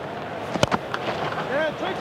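Cricket bat striking the ball once, a sharp crack about half a second in, over the steady noise of a stadium crowd with voices rising after the shot.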